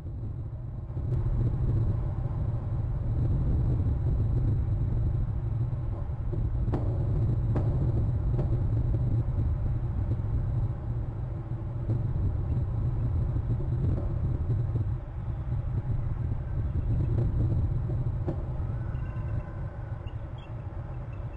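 A steady low rumble that starts suddenly, with a few sharp clicks. Faint, high-pitched calls of bald eagles come in near the end.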